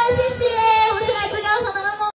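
A woman singing into a microphone over amplified dance music with a steady beat.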